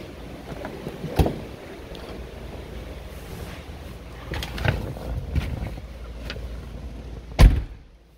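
A car's driver's door shutting with one heavy thump near the end, after a few scattered knocks and bumps as someone gets into the seat of a Tesla Model 3.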